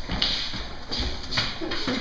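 Children moving about a table: a few short scuffs and light taps, about three of them spread through the two seconds.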